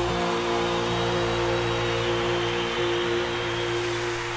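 Live band holding a sustained chord, several steady notes ringing together over a wash of crowd noise in a large arena.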